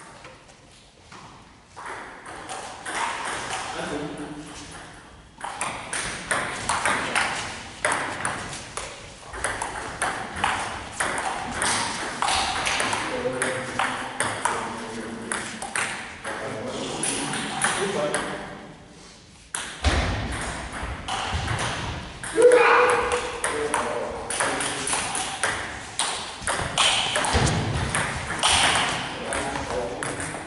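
Table tennis ball clicking back and forth between rubber bats and the table in quick rallies, with short breaks between points. The hits echo in a large hall.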